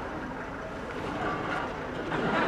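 Steady outdoor background noise: an even rumble with faint, distant voices.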